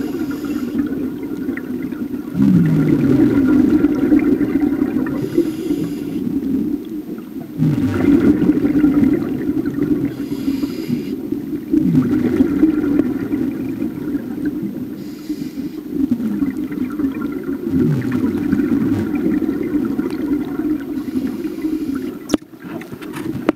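Scuba diver's own regulator breathing underwater: about four breaths, each a short hissing inhale followed by a longer, louder gurgling rush of exhaled bubbles, one breath roughly every five seconds.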